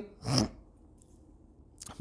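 A man's single short cough about half a second in, then quiet room tone. He is unwell.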